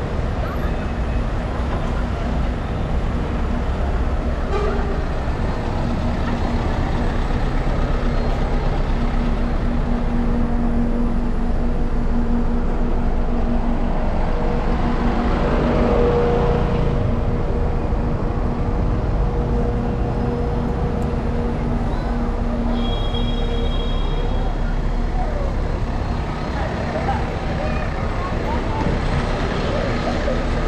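Busy city-street traffic: double-decker buses and cars running close by in a continuous rumble, with a steady engine hum through the middle. Pedestrians' voices chatter underneath.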